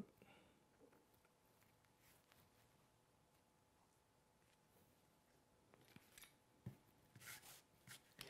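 Mostly near silence, with faint brief handling sounds of synthetic fly-tying fibers and tools near the end: a small click, then a few short rustles or snips.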